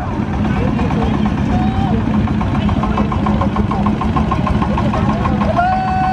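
Small farm tractor's single-cylinder diesel engine running steadily with a fast, even beat. Voices talk faintly over it.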